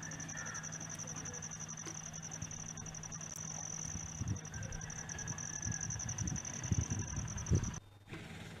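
An insect's high, rapidly pulsing trill, steady and unbroken, cutting off suddenly near the end. Underneath are a low steady hum in the first half and some low rumbling in the second.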